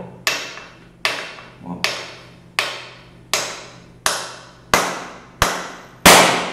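Light, evenly spaced taps of a small wooden block on the protruding poppet (percussor) of a pressurised Chinese PCP airgun valve, eight strikes each with a short ringing decay. The blows knock the poppet in to seat it against its polyacetal seal while the valve holds 200 bar.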